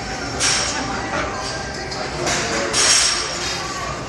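A person breathing out hard in three short, hissing bursts while straining through heavy leg-press reps, over steady gym background noise.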